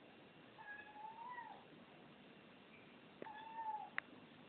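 A domestic cat meowing twice, two short calls about two seconds apart, each rising slightly then falling away, with a sharp click at the very end.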